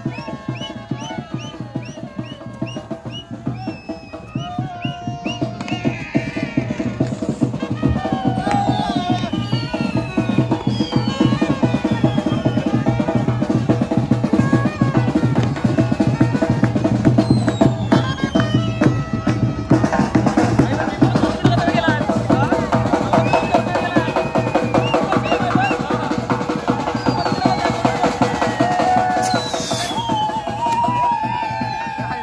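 Live brass band playing on a crowded boat: fast, continuous drumming with trumpets over it, and high whistles sliding downward, the playing growing louder after about four seconds.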